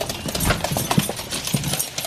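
Dogs' nails clicking on a hard floor as they hurry out the door: a quick, irregular run of sharp taps.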